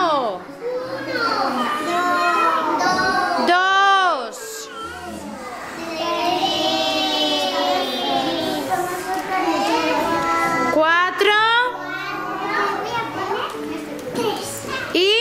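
Young children's high-pitched voices chattering and calling out in a classroom.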